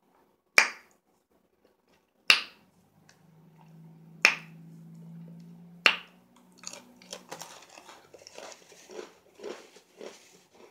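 Four loud, sharp mouth pops, one every second and a half to two seconds, with a low steady hum under the middle stretch; from about six and a half seconds in they give way to softer wet mouth clicks and smacking.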